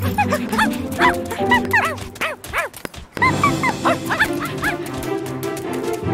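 Cartoon puppies yapping and barking in many quick short barks over background music, with a brief break in the sound about halfway through.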